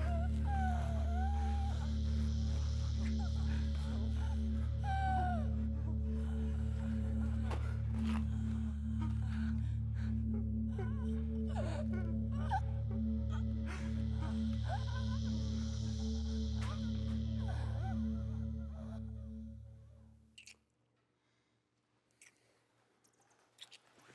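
Low, dark droning film score with a slow throbbing pulse, with brief wavering higher sounds over it. It fades out about twenty seconds in, leaving near silence with a few faint clicks.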